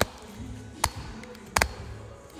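Sharp knocks from a phone and its mount being handled close to the microphone: three of them, the last a quick double knock, over background music playing in the gym.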